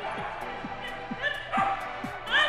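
Background music with a steady beat. A dog barks twice, sharply, in the second half.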